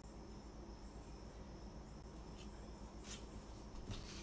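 Faint room tone with a steady low hum, and a few faint, short scrapes of a palette knife against a tub of spackle in the last couple of seconds.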